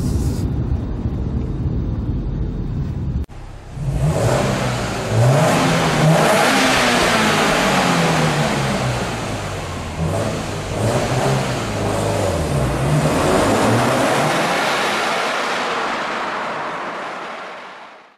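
For the first three seconds, steady low road and engine noise heard from inside the Subaru WRX STI's cabin. After a sudden cut, the STI's turbocharged flat-four accelerates hard through a road tunnel, its revs climbing and dropping several times, then fading away.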